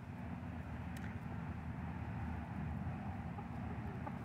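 Steady low rumble with a constant low hum underneath, like a distant engine or machinery running.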